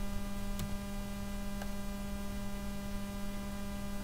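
Steady electrical mains hum picked up by the recording, with a strong low tone and fainter overtones above it, and two faint clicks about half a second and a second and a half in.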